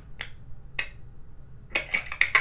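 Sharp, isolated clicks like finger snaps in a movie trailer's sound design, over near quiet: one shortly after the start, another just before the middle, then a quick run of two or three near the end.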